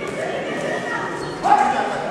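Crowd voices echoing in a large sports hall, with one loud, short shout about one and a half seconds in.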